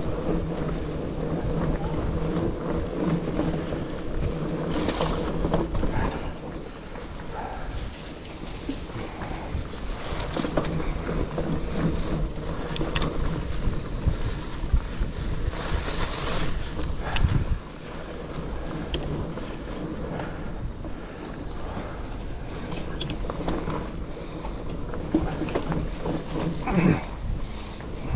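Mountain bike riding over a dirt trail covered in dry leaves: tyres rolling through crushed leaves, with bike rattle, scattered knocks and wind on the microphone. A steady low hum comes and goes, and it all gets quieter about eighteen seconds in.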